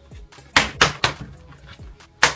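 Snap fasteners on a motocross helmet's padded liner popping loose as the pads are pulled out: two sharp snaps about a third of a second apart, about half a second in.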